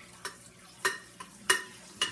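A glass bowl being handled in a stainless steel sink, knocking and clinking against the sink and colander: four short, sharp knocks in two seconds, the loudest near the end.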